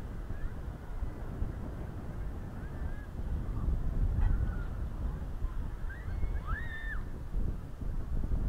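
Wind buffeting the microphone in a steady low rumble, with a few faint, short calls that rise and fall in pitch, the clearest about six to seven seconds in.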